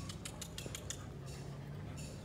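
Rottweiler puppies jostling on a tiled floor: a quick run of light clicks and scrapes, most of them in the first second.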